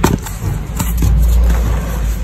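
Reformed gym chalk block pressed and broken by hand, with a few short, sharp crunching cracks, the first right at the start. A loud steady low rumble of background noise runs underneath.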